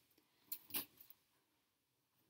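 Faint handling noise from garments being moved: two short rustles about half a second in, then a couple of tiny clicks, with near silence around them.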